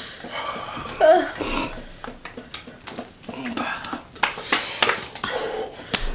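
Two people's heavy, hissing breaths and short vocal sounds, reacting to the mouth-burn of an extremely hot chili-coated peanut; a longer hissing breath comes about four seconds in.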